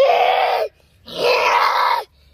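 A child's voice letting out two loud, held cries about a second apart, each swooping up in pitch as it starts.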